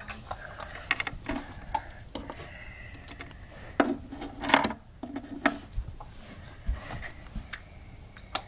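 Small toy figures being handled and set down on the floors of a dollhouse: a string of light, irregular knocks, clicks and rubbing, the loudest a couple of knocks about halfway through, with rumbling handling noise from the phone held close.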